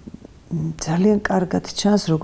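Speech: a voice talking in Georgian, after a brief pause at the start.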